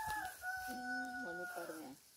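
A rooster crowing: a long call held on one steady pitch, breaking off just before the end.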